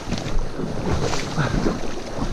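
Shallow stream water rushing and splashing, with wind buffeting the microphone.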